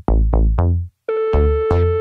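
Electronic background music: short synthesizer notes with a heavy bass, a brief pause about a second in, then a held synth chord comes in under further notes.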